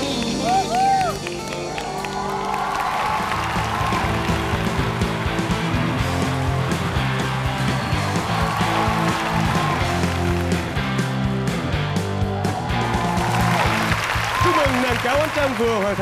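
Studio audience clapping and cheering under band music that plays on as a song finishes.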